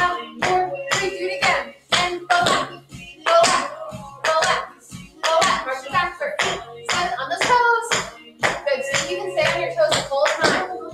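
Tap shoes striking a hard studio floor in a steady rhythm, roughly two to three taps a second: flaps (a brush then a tap on the ball of the foot) travelling forward and marches on the toes travelling back, over background music.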